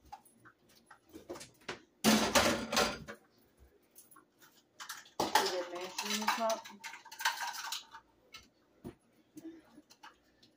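Kitchen utensils and dishes clattering on a stone counter, loudest in one dense rattle about two seconds in, with scattered short knocks and clinks after it.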